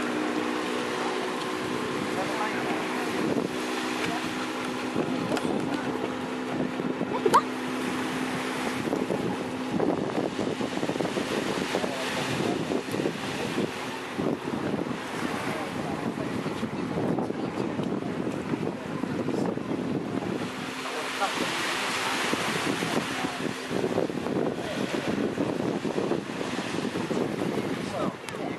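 Small waves washing on the shore with wind buffeting the microphone and indistinct voices. An engine drones steadily underneath for roughly the first third, fades, and comes back faintly near the end; a single sharp click with a short chirp sounds about seven seconds in.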